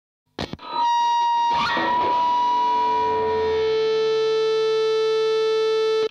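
Opening of a rock song: after a few short clicks, a distorted electric guitar sounds one held note, then a second attack about a second and a half in, and holds a ringing, effects-laden chord that sustains steadily.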